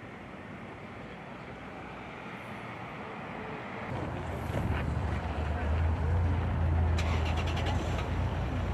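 Outdoor location ambience: a steady haze of distant city noise, turning about halfway through into a louder, steady low rumble. A quick run of faint ticks comes near the end.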